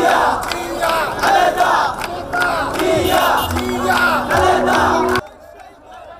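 A large crowd of political rally supporters shouting slogans together, with scattered hand claps. The loud shouting cuts off abruptly about five seconds in, giving way to a quieter crowd.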